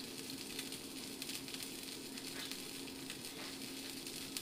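A small bluegill fillet frying in olive oil in a nonstick pan: a steady, quiet sizzle with many fine crackles as it browns, nearly done. A low steady hum sits underneath.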